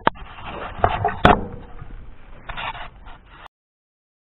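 Rubbing and scraping with a couple of sharp clicks about a second in, cutting off suddenly about three and a half seconds in.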